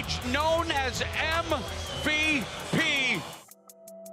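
A man's voice calling out in long, drawn-out glides over music with a steady low beat. Both cut off suddenly about three and a half seconds in, and faint electronic music begins near the end.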